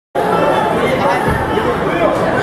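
Spectators chattering in a gymnasium, several voices talking over each other.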